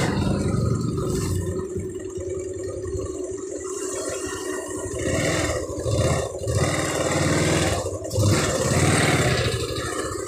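Motorcycle engine running, with the revs rising and falling several times in the second half as the bike pulls away.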